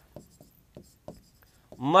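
Marker pen writing on a whiteboard: several short, quiet strokes as letters are drawn, with a man's voice starting near the end.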